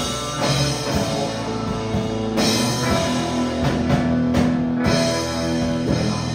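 Live rock band playing a loud instrumental passage: electric guitars over a drum kit, with no singing.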